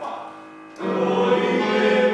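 Mixed choir in rehearsal: a sustained instrumental chord dies away, then a little under a second in the choir comes in loudly, holding a chord over the accompaniment.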